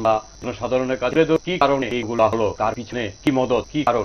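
A man talking continuously, with the words indistinct.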